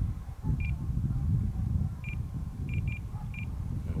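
An RC radio transmitter gives five short, high electronic beeps at irregular intervals, two in quick succession about three seconds in, as its throttle and switches are worked. Wind rumbles low on the microphone underneath.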